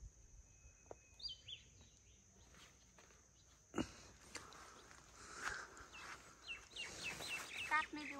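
Faint rustling of leafy greens being picked by hand, with a sharp click about four seconds in. Near the end a bird calls in a quick run of short, high, falling chirps.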